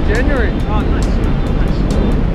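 Wind rushing over the microphone of a selfie camera under an open tandem parachute canopy: a loud, steady low rumble. A brief stretch of voice comes in the first second.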